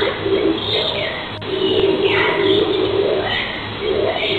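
Low, eerie, voice-like moaning recorded through a doorbell camera's microphone in broken stretches, the longest in the middle. It sits over a steady electrical hum, with a single sharp click about a second and a half in.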